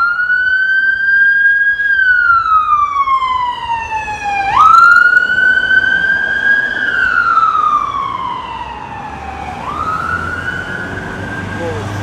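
Emergency vehicle siren wailing on a nearby road: each cycle jumps up quickly, holds and then falls slowly, about three cycles, loudest about five seconds in and fading near the end, over a low rumble of road traffic.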